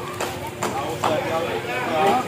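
Large knife chopping and prying into the spiky husk of a durian, giving several sharp knocks and cracks as the shell is split open.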